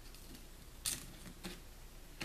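Faint handling sounds of small plastic paint bottles and black straps being fitted into PVC holders, with a short sharp click just under a second in and a softer one about halfway through.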